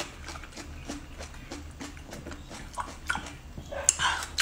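Close-miked chewing of raw marinated mud snails: wet mouth sounds with many small, irregular clicks.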